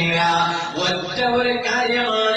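A man's voice chanting in a melodic, drawn-out style, holding long notes.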